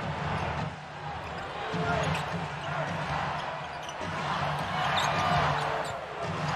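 Basketball being dribbled on a hardwood court under the steady noise of an arena crowd during live play.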